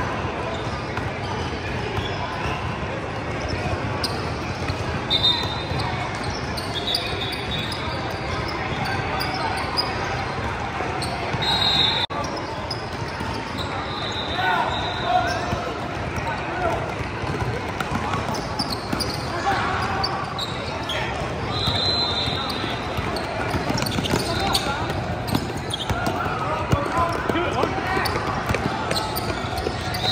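Basketball game heard on the court: a ball bouncing on the floor, sneakers squeaking briefly several times, and players' voices echoing in a large hall.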